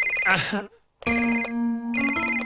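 A telephone ringing with a trilling electronic ring that comes in short bursts about a second apart.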